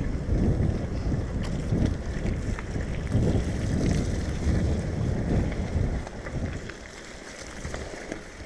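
Wind buffeting an action camera's microphone, with the rolling rumble of a mountain bike's tyres, as the bike rides fast down a wet track. It gets quieter about six seconds in.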